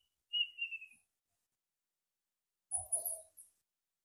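A faint bird call: one thin, slightly falling whistled note about half a second in. A brief faint sound follows shortly before the three-second mark, with near silence between.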